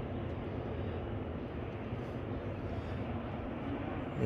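Steady low background rumble of outdoor ambience, with no distinct events.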